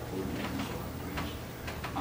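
A handful of short, irregular clicks and taps over a steady low room hum.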